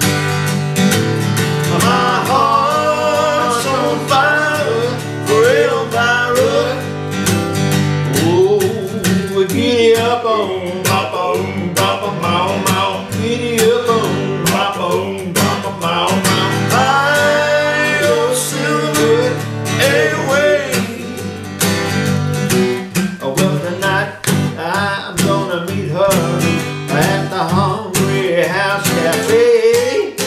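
Country song performed live: an Epiphone acoustic guitar strummed in a steady rhythm while two men sing together.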